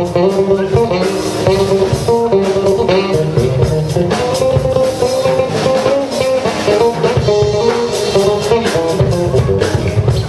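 A live jazz trio playing: a guitar melody over an electric bass line and a drum kit keeping time with cymbals.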